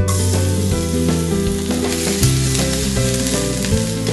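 Beefsteaks sizzling and frying in a hot pan, a steady crackling hiss, with tongs stirring them. Background music plays underneath.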